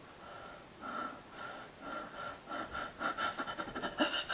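A man breathing in audible breaths that come faster and louder over the few seconds, acting out the quickening breath of a panic attack.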